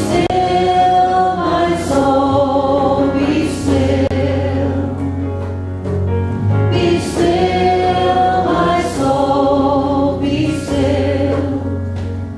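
Group of voices singing a slow, meditative hymn in phrases of about two seconds, led by two women and accompanied by piano and a woodwind.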